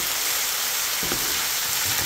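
Diced potatoes, beef sausage, onion and tomato frying in a pan in the sausage's own fat, a steady sizzle.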